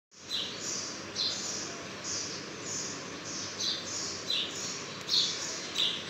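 A bird chirping over and over, short high chirps about twice a second, over a steady background hiss.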